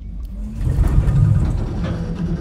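A deep, loud rumble starts suddenly and swells to its loudest about a second in.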